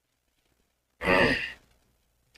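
A man's short, breathy sigh about a second in, lasting about half a second and falling in pitch.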